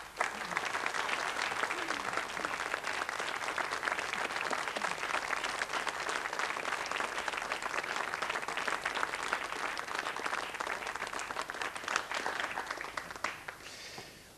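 Studio audience applauding: dense clapping that starts suddenly and fades away near the end.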